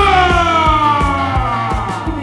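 Live band music: a man sings one long held note into a microphone, its pitch sliding slowly down, over a steady drum and bass beat.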